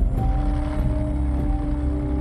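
A tank's engine and tracks running, a low, steady rumble, with a held music chord underneath.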